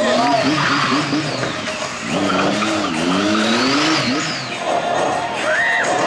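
Motorcycle engine revving up and down as the bike is ridden in stunts, with a high tyre squeal rising and falling over it.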